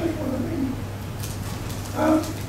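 A man's short, low, drawn-out hesitation sound, falling in pitch, then a pause over a steady low electrical hum from the hall's sound system.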